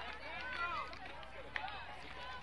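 Several high-pitched voices calling out and chattering over one another, players cheering, with a single sharp click about one and a half seconds in.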